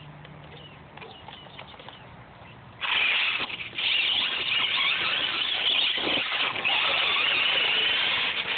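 Traxxas Stampede VXL RC truck pulling away about three seconds in: the high-pitched whine of its electric motor and drivetrain, with tyre noise on asphalt, loud and steady as it drives off.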